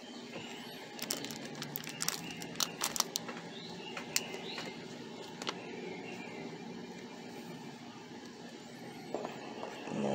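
Quiet outdoor background noise with a quick run of small sharp clicks and taps about a second in, lasting about two seconds, then a few single clicks spaced out.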